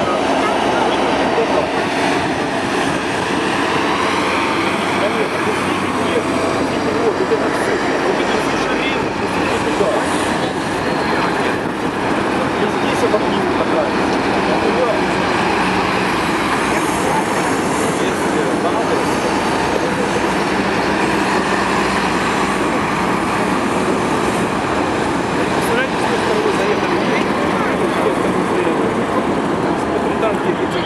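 A column of KrAZ army trucks driving past, one towing an artillery gun, with a steady din of diesel engines and tyres on the road. Voices can be heard under it.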